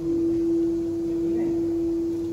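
A loud, steady, single-pitched tone held without a break through the whole stretch.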